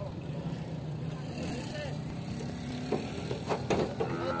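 A low steady engine hum under indistinct voices, with a few sharp knocks near the end as a bull is hauled across a small truck's metal bed toward the tailgate.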